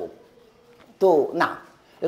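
A man's voice: a pause, then about halfway through a single drawn-out vocal sound falling in pitch.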